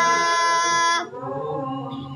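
A group of voices chanting an Arabic verse together without accompaniment, holding a long note that cuts off about a second in; a quieter, lower voice carries on singing after it.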